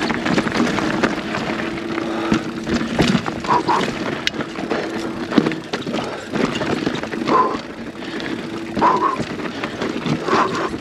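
Polygon Siskiu T8 full-suspension mountain bike rolling down a dry, rocky dirt trail: tyres crunching over loose dirt and stones, with frequent knocks and rattles from the bike over the bumps. A steady buzz comes and goes in the first half.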